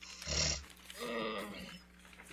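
A woman's non-speech vocal sounds close to the microphone: a short breathy burst, then a longer voiced, groan-like sound about a second in.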